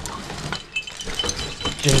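A climbing rack of metal carabiners and cams jingling and jangling as it is pulled out of a bag: a run of small metallic clinks and rattles.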